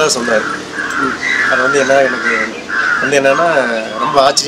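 Crows cawing, a quick run of harsh caws through the first half, while a man talks.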